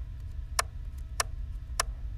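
Computer keyboard arrow key pressed repeatedly, one sharp click about every 0.6 s (four in all), stepping the edit back frame by frame. A steady low hum runs underneath.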